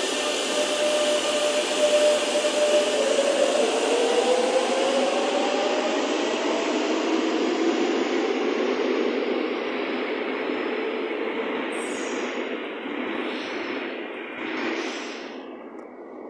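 Madrid Metro electric train pulling out of the station. The traction motors whine in a tone that dips about three seconds in and then climbs steadily as the train gathers speed, over wheel and rail rumble that fades away near the end.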